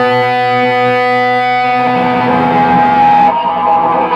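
Amplified 1991 Gibson Flying V electric guitar playing sustained notes that ring on, moving to a new held note about halfway through.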